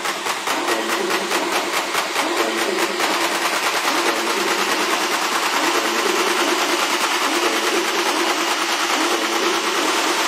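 Techno track played through a DJ mixer: a fast, even high percussive pulse fades out about three seconds in, leaving a growing wash of noise over a repeating low synth riff.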